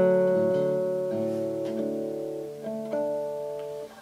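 Nylon-string classical guitar: a chord rings out with one note held on while a few more notes are plucked over it, each ringing and fading. The strings are damped just before the end.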